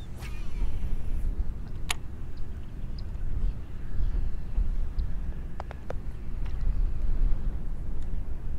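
Wind buffeting the microphone, a steady uneven low rumble, with a few light sharp clicks from gear on the kayak.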